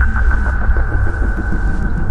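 Dark ambient background score: a deep continuous rumble under a sustained high tone, with repeated falling sweeps.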